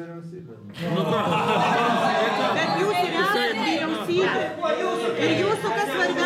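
Several people talking at once, their voices overlapping in a crowded room; the talk swells about a second in and stays busy.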